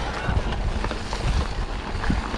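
Knobby Maxxis mountain-bike tyres rolling over a dirt trail strewn with dry leaves, with scattered small knocks from the bike. Wind buffets the camera's microphone, adding a steady low rumble.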